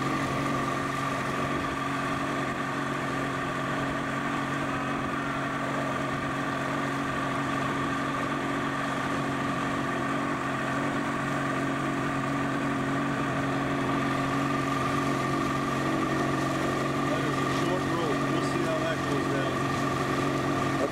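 Motorboat engine running at a steady pitch while towing an inner tube at speed, with the rushing hiss of the boat's wake.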